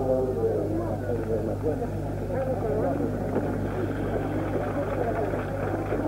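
Indistinct, muffled speech over a steady low hum.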